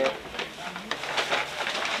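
Plastic bag rustling and crinkling in irregular crackles as it is handled, with faint voices in the room underneath.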